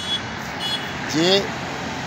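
Steady roadside traffic noise, with two short high-pitched beeps in the first second.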